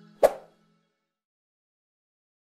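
A single short pop sound effect about a quarter second in, timed to an animated cursor clicking a subscribe button. It sits over the last fading notes of outro music.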